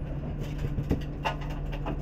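Jeep Wrangler engine running low and steady while rock crawling, with several sharp knocks and scrapes as the hardtop grinds against the rock wall.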